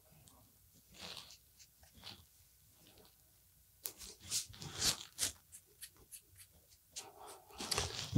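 Fingertips and palms rubbing styling balm together and working it into mustache hair: faint, crackly rubbing close to the microphone, a few small clicks at first, then a quick run of short rubs from about four seconds in.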